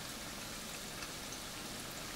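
Small battered fish (anchovies) deep-frying in a pan of oil over medium heat: a faint, steady, even sizzle of bubbling oil.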